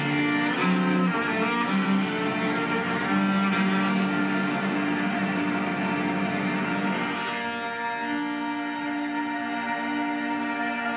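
Amplified viola bowed live through electronic effects, with sustained notes ringing on in reverb and delay. About seven seconds in, the moving notes give way to a steadier held chord.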